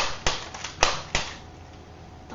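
Plastic Nerf Maverick toy blaster being handled, with four sharp plastic clicks and knocks in about the first second.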